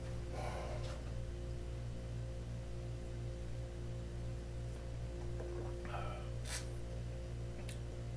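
A steady low drone with two short sniffs, about half a second in and near the end, as whiskey is nosed from a tasting glass.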